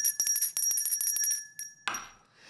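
A small bell rung rapidly: many quick strikes over a steady high ring, cutting off suddenly near the end, followed by a single knock.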